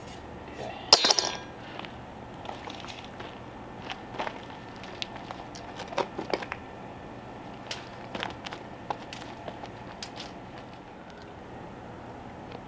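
A metal straightedge clattering down onto a rubber floor mat about a second in, followed by scattered light clicks and scuffs as the mat is handled and marked out.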